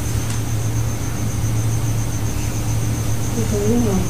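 Steady low hum with a faint, rapid, evenly pulsing high note over it. Near the end, a person's voice comes in, wavering up and down in pitch.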